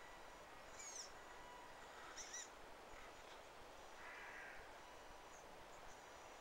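Near silence outdoors, with a few faint, short bird calls: a chirp about a second in, a louder one a little after two seconds, and a brief call around four seconds.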